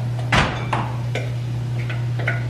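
A spoon knocking and tapping against a plastic food processor bowl and an enamelled cast-iron pot as puréed vegetables are scraped into the pot: one sharp knock about a third of a second in, then a few lighter taps. A steady low hum runs underneath.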